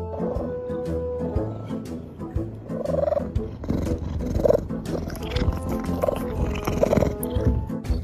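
Background music with steady bass notes, over which an animal gives four short calls in the second half.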